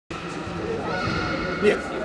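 Overlapping indistinct voices in a busy room, slowly growing louder, with a short louder vocal sound near the end.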